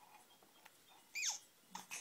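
A baby's brief high squeal, falling steeply in pitch, about a second in, followed by a few faint clicks from a plastic activity-centre toy near the end.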